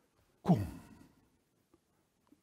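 Speech only: a man's voice says a single word, 'kom', once, falling in pitch.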